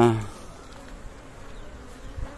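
A swarm of Asian honey bees (Apis cerana) buzzing with a steady, even hum.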